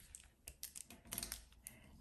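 Pen writing on paper: a faint scatter of light taps and short scratches from the pen tip as figures are written.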